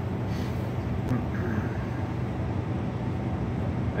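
Steady low hum of a truck cab, from the idling engine or its climate fan, with faint rustling of paracord being handled.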